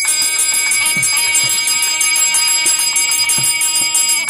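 Small brass hand bell rung rapidly and evenly throughout, as it is during an aarti lamp offering, over music with sustained tones.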